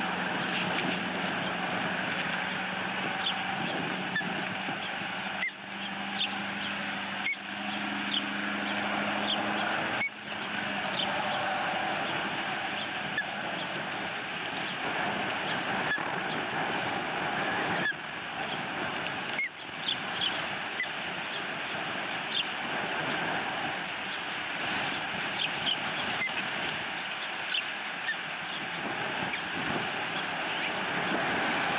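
Outdoor ambience: a steady hiss with short, high bird chirps scattered throughout. A low, steady engine-like hum runs under the first ten seconds.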